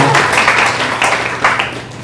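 Audience applauding with scattered hand claps, thinning out and fading near the end.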